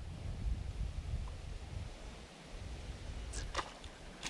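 Low, uneven rumbling microphone noise, with a couple of brief sharp clicks near the end.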